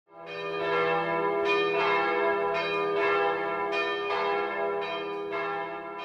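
Bells ringing, struck about once a second, each strike ringing on under the next and the sound fading somewhat near the end.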